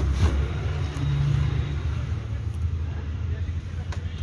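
Steady low vehicle rumble heard from inside the car with its door open, with a few light knocks and rustles in the first half second as a person climbs out of the seat.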